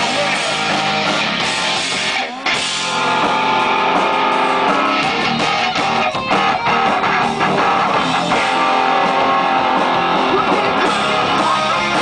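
Live rock band playing loud, electric guitars over a drum kit, with a brief drop in the sound a little over two seconds in.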